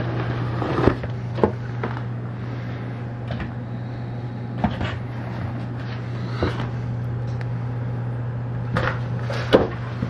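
A cardboard carton scraping and knocking now and then, about half a dozen short sounds, as a cat pushes into it and handles it. A steady low hum runs underneath throughout.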